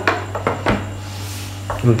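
A few light plastic clicks and knocks as a manual food chopper's clear bowl and green lid are handled and the lid is fitted back on.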